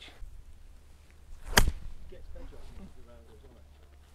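A golf iron striking a ball out of long rough: one sharp crack about a second and a half in.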